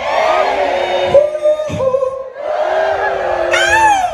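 Concert crowd cheering and screaming, with held notes ringing under it. A loud rising whoop comes close by near the end.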